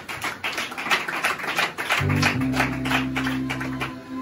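Keyboard music with a run of quick percussive clicks; a low, steady chord is held from about two seconds in.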